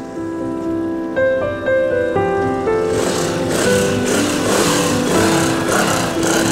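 Background music: soft sustained notes changing in a slow melody, growing fuller and louder, with a hiss joining about halfway through.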